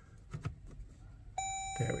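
Dashboard warning chime of a 2016 Jeep Grand Cherokee: one steady electronic tone starting about a second and a half in and held for just over a second.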